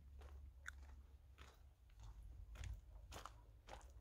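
Near silence with faint, irregular crunching footsteps on gravel.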